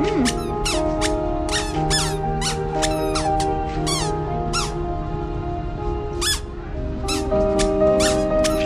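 Music with sustained held chords, overlaid by short high squeaky chirps repeating irregularly about twice a second.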